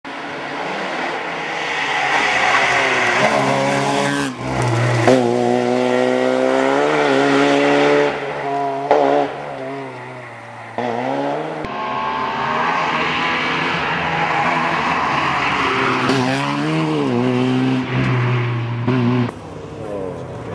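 Opel Astra GSI rally car engine revving hard, its pitch climbing through each gear and dropping sharply at every shift or lift-off. The sound jumps abruptly twice where the footage is cut between passes.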